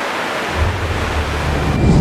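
Sea surf and wind ambience, an even rushing noise. About half a second in, a deep rumble swells in beneath it and grows louder toward the end.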